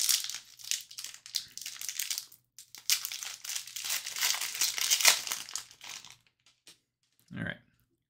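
Foil wrapper of a hockey card pack crinkling and tearing in the hands as it is opened, a dense crackle that runs for about six seconds and then stops.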